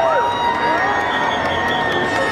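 A large street crowd cheering and shouting without a break, with whoops rising and falling above the din.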